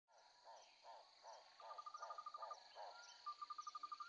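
Faint marsh ambience: insects trilling with a steady high buzz, over a string of short calls repeated about twice a second.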